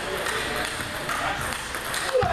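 Celluloid-type table tennis ball clicking off rubber paddles and the table during a fast rally, with more ball clicks from neighbouring tables and background voices.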